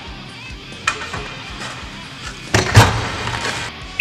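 Background music, with a sharp knock about a second in and a loud thump near three seconds in.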